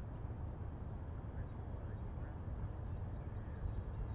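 Outdoor ambience: a steady low rumble of wind on the microphone, with a few faint, short bird chirps.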